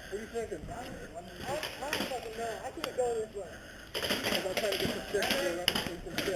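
Faint, distant voices of other players calling out, with one sharp click about three seconds in. A rustling noise starts about four seconds in.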